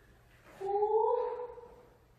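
A woman's voice drawing out one high syllable for about a second, rising a little in pitch: a wordless vocal cue on the beat.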